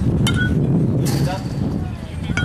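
Aluminum youth baseball bat hitting a pitched ball with a sharp, ringing ping, then a second sharp clack about a second later.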